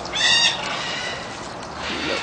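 A parrot gives one short, high call about a third of a second in, over steady background hiss.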